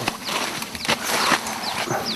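Rustling and snapping of cut branches as they are lifted and laid over a stacked woodpile, with several sharp cracks, plus a few short, high chirps that fall in pitch.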